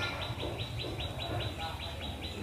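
A bird calling in a fast, even series of short high chirps, about five a second, over a low steady hum.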